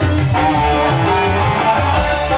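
Live band music with a guitar prominent over a steady, pulsing bass line.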